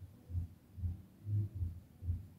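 Soft, low thumps in a steady beat, a little over two a second.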